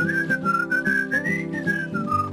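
A person whistling a melody over light instrumental backing with a steady beat; the whistled line climbs to its highest note about one and a half seconds in, then falls.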